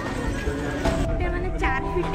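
Music playing over the chatter of a large crowd. About halfway, the sound changes abruptly to a melody with quick falling swoops on high notes.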